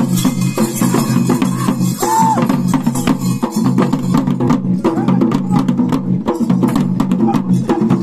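Barrel drums beaten in a fast, dense, steady rhythm, as ritual drumming for a Koragajja kola dance.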